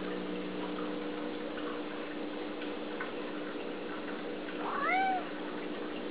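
A domestic cat meowing once near the end, a short call that rises and then falls in pitch, over a steady low hum. The cat is begging to be fed.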